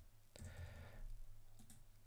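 A few faint computer-keyboard keystrokes as a short name is typed, over near silence.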